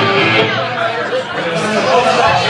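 Live rock band's electric guitar sounding as the drums drop out, with people talking loudly over it.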